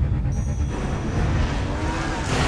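Deep, continuous rumble of trailer music and sound design, with engines revving and rising in pitch in the second half.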